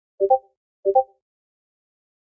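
Electronic notification chime from a Discord call: a short two-note rising blip, sounded twice about two-thirds of a second apart.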